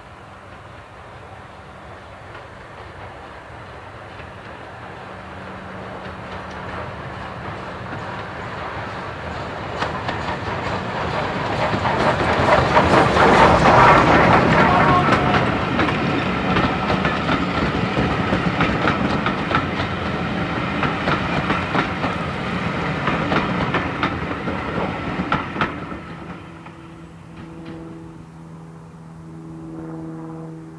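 SDJR 7F 2-8-0 steam locomotive No. 53808 approaching under steam, growing louder and loudest as it passes about halfway in. Its coaches follow, clicking over the rail joints, and the sound drops away a few seconds before the end.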